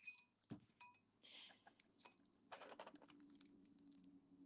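Faint, scattered clicks and taps of a metal ring on a steel ring mandrel and in the hands, a couple of the early clicks ringing briefly.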